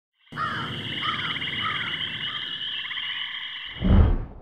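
A dense chorus of small calling animals: a steady high, fast-pulsing trill with a lower chirp repeating about every half second. Near the end the chorus cuts off and a loud low thud comes in.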